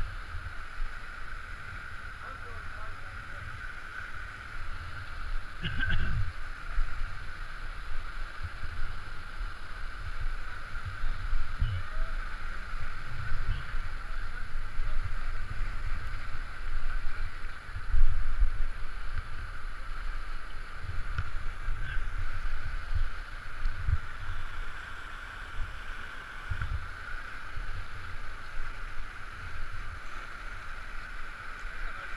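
Steady rushing of a creek's whitewater rapids running at flood height, heard close up as an even hiss. Irregular low thumps on the camera microphone come and go, the strongest about two-thirds of the way through.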